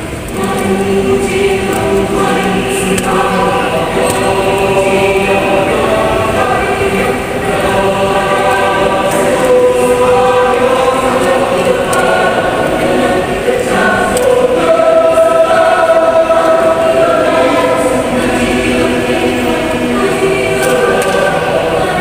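Mixed youth choir singing in full harmony, many voices holding chords together and moving from chord to chord.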